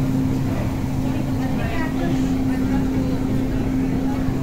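Restaurant ambience: a steady low hum with faint voices talking in the background.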